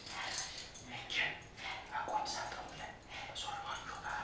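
Conversational voices, spoken in short broken phrases.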